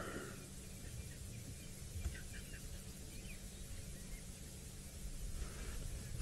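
Quiet outdoor bush ambience: a steady low rumble with a few faint, short high chirps between about two and three and a half seconds in.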